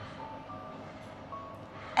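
Faint background music under a pause in the dialogue: a few soft, sparse single notes over a low hum.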